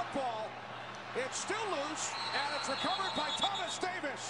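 American football television broadcast audio at moderate level: voices talking in the background, with a few soft knocks.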